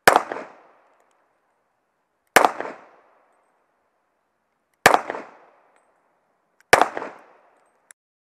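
Four shots from a Para Pro Comp .40 S&W 1911 pistol, slow-fired about two seconds apart, each with a short fading echo.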